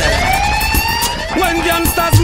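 A siren-style DJ sound effect swooping up in pitch over a dancehall mix, as the drums drop out at a change of tune.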